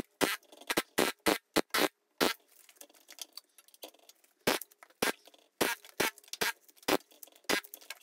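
Pneumatic air chisel knocking bark off a green black walnut log: short sharp cracks at irregular intervals, a few a second, with a quieter stretch in the middle.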